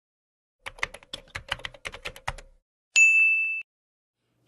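Typewriter sound effect: a quick run of about a dozen key clacks, then a single bell ding that rings for under a second.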